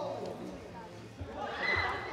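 Voices in a sports hall, with a high, drawn-out shout near the end and a couple of dull low thuds.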